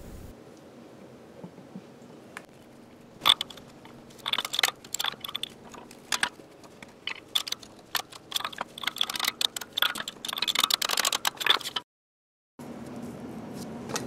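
Irregular light metallic clicks and ticks as an oil seal is pressed into the cast-iron bevel gearbox housing with a seal driver. They begin about three seconds in, come thick and fast, and cut off suddenly near the end.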